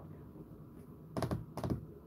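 Computer keyboard typing: a few quick key clicks in two short clusters a little past halfway.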